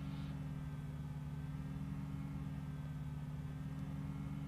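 Quiet room tone: a steady low hum with no other sound.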